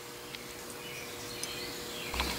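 Quiet outdoor background: a faint steady hum with a few faint, short high chirps, like insects and birds.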